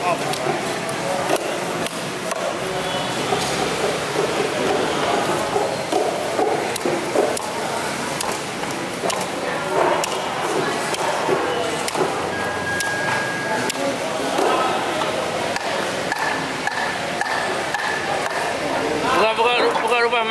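Occasional knocks of a large knife cutting through a mahi-mahi head on a wooden chopping block, under continuous indistinct chatter of voices.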